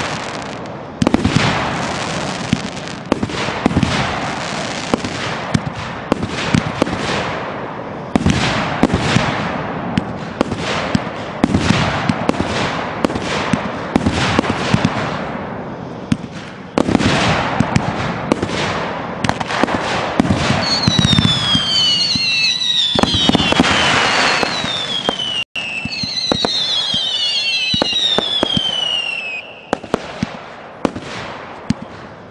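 Consumer aerial fireworks going off in a rapid run of sharp launches and bursts, each trailing off. About two-thirds through, several shrill whistles sound over the bursts, each falling in pitch.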